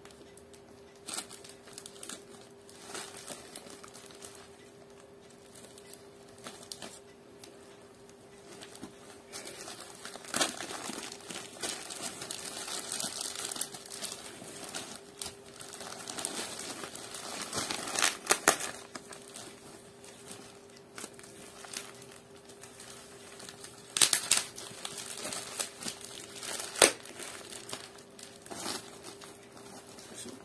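A puffy mailing package being worked open by hand, its wrapping crinkling and rustling throughout, with a few sharper tearing rasps scattered through it.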